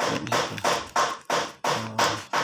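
A steady rhythmic tapping beat of sharp strokes, about three a second, with a brief low pitched tone near the end.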